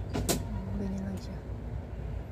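A kitchen knife cutting through fresh lotus root held in the hand, with one sharp snap about a quarter second in, over a steady low rumble.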